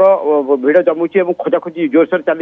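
Continuous speech: a man talking in a news report, with no other sound standing out.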